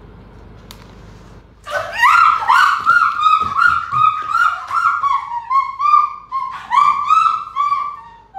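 Small dog yelping in a rapid, almost unbroken run of loud, high-pitched cries, about three a second, starting about two seconds in.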